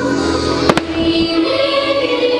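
Show music with long held notes, cut about two-thirds of a second in by two sharp firework bangs in quick succession.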